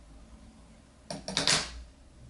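A short cluster of clicks and a brief rustle about a second in: scissors being put down on a glass tabletop and leggings fabric being handled.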